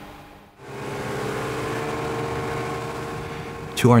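Suzuki outboard motor pushing a small boat along at a steady speed, with the rush of wind and wake water, setting in about half a second in.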